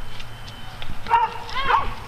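A dog barking twice in high calls that rise and fall in pitch, about a second in and again around one and a half seconds.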